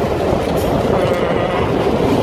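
Running noise of a passenger train heard from inside a coach at an open window: a steady rumble and clatter of the wheels on the track.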